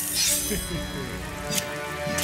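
Cartoon background music with held notes, opening with a short hissing whoosh that fades within about half a second, and a brief voice-like sound soon after.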